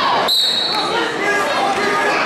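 A referee's whistle blown once, a short, steady, high-pitched tone of about half a second, over the voices and chatter of a gym crowd.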